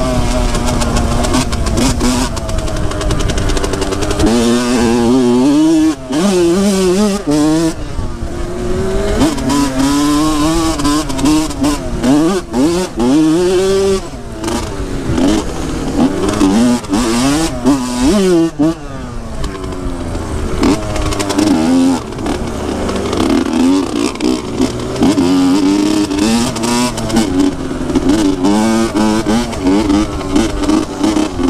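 Dirt bike engine under way, revving up and easing off over and over, with wind buffeting the microphone.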